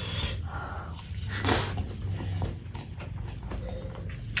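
Close-miked hand-eating sounds: fingers squishing and scraping rice across a metal plate, with wet chewing and mouth noises. One sharp, louder noise stands out about one and a half seconds in.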